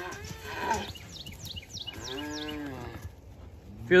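Brahman-cross calves bawling: a short rising call near the start and a longer rise-and-fall call about two seconds in, with a run of quick high chirps between them.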